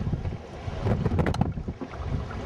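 Wind rumbling on the microphone over choppy open water beside a small rowing boat, with a few sharp knocks about a second in.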